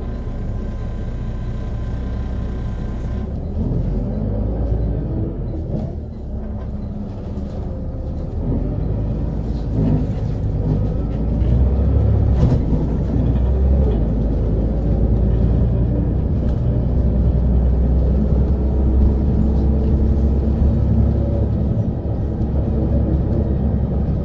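Volvo B7RLE bus diesel engine with its ZF Ecomat automatic gearbox, running under way with a continuous low rumble. The pitch rises a few seconds in and again around ten seconds, then the engine runs steadier and louder.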